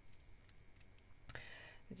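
Near silence with a few faint clicks as a beaded clover brooch is handled and turned over in the fingers, and a short hiss about two-thirds of the way in.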